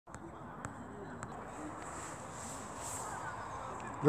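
Faint outdoor background noise with distant, indistinct voices, and two soft clicks, about half a second and a second and a quarter in.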